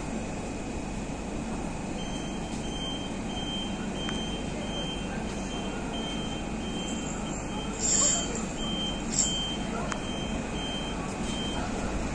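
Low rumble of electric trains at a station platform, with a high electronic warning beep repeating about twice a second. A short sharp hiss comes about eight seconds in, and a smaller one a second later.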